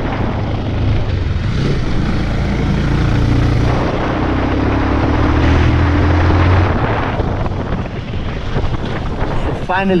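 Motorcycle engine running as the bike rides along a lane, with wind noise on the microphone. The engine's low hum is steady, then drops away about two-thirds of the way through.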